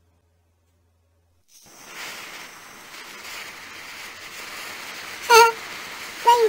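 Silence for about a second and a half, then a steady hiss of a firework fountain spraying sparks. A short, loud pitched sound cuts in near the end.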